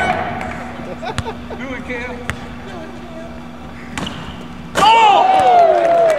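A basketball bouncing on a hardwood court, a few separate bounces over a low steady hum. Just before the end, loud voices break out.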